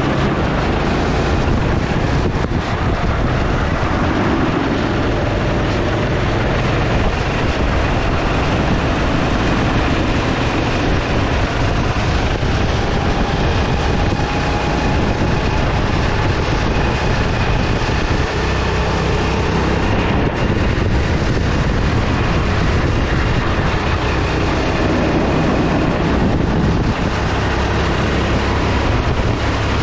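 Rental go-kart engine running hard around the track, heard from a camera mounted on the kart, mixed with heavy wind noise on the microphone at a steady loud level.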